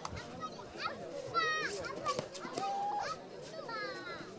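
Players and spectators shouting and calling out during a kabaddi raid, with a few sharp high-pitched cries about a second and a half in.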